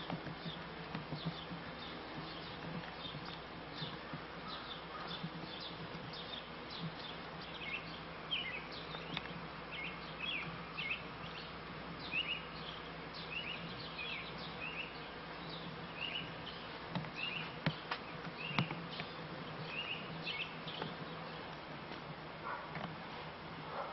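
Honeybee swarm buzzing in a steady hum, with a bird's short, falling chirps repeating over it and an occasional knock.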